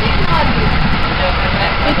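Steady engine and road rumble of a moving passenger vehicle, heard from inside the cabin, with faint talking over it.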